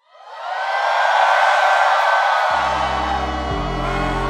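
Concert audience cheering and screaming, swelling up quickly at the start. About two and a half seconds in, music comes in underneath with deep, sustained bass notes.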